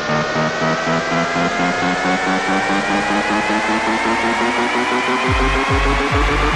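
Progressive psytrance build-up: a synth riser climbs steadily in pitch over a pulsing bassline, and the kick drum and rolling bass come back in about five seconds in.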